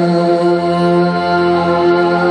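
Live song: a male voice holding long, steady-pitched notes over instrumental accompaniment.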